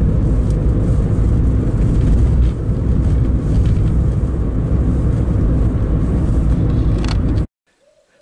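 A car driving along a country road, heard from inside the cabin: a steady, loud low rumble of engine and tyres that cuts off abruptly near the end.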